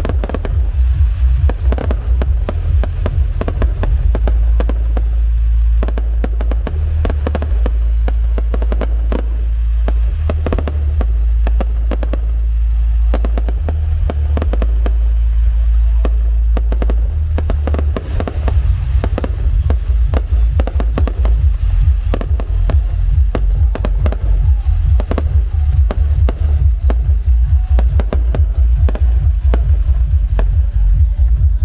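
Fireworks display: a dense, continuous run of cracks and bangs from fountain fireworks and bursting aerial shells, getting thicker about two-thirds of the way through, over loud music with a deep bass line.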